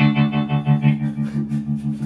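Electric guitar played through a combo amplifier: a single chord strummed and left ringing, its level pulsing about four times a second, cut off near the end.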